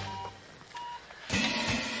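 Two short, steady electronic beeps from a patient monitor, about three-quarters of a second apart. Background music swells in after them.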